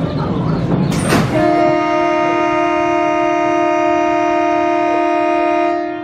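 Roller coaster station dispatch signal: a short hiss about a second in, then a loud horn-like tone held at one steady pitch for nearly five seconds as the coaster train is sent out of the station.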